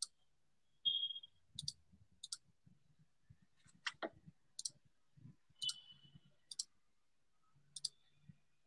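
Faint computer mouse clicks, about eight of them scattered irregularly and several in quick double pairs, over faint low room rumble picked up by a call microphone.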